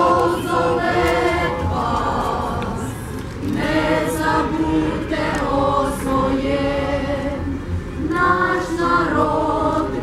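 A choir of voices singing a slow song together, with long held notes and a wavering vibrato.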